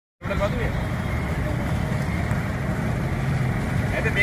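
Steady low rumble of road traffic on a street, with faint voices.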